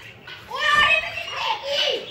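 Children's voices calling out, starting about half a second in.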